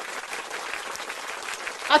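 Recorded crowd applause sound effect: steady clapping from many hands, played as a stream alert. A voice cuts in right at the end.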